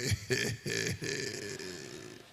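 A man laughing into a microphone: a few short bursts in the first second, then a longer, quieter chuckle that fades near the end.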